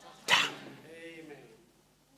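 A brief sharp noise, then a faint hum from a human voice whose pitch rises and falls for about a second.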